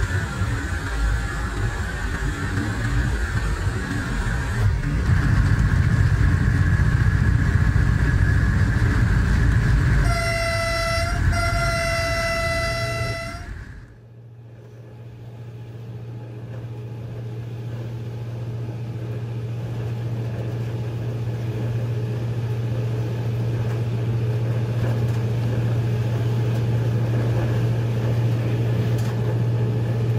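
Diesel locomotive running at speed, heard from its front end. About ten seconds in, its horn sounds twice, a short blast and then a longer one. The sound then drops off suddenly and a steady low engine hum carries on.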